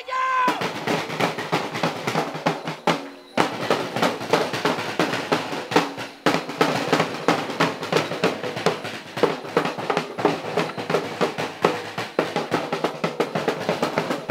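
Fast, steady drumming on traditional drums, with a short break about three seconds in.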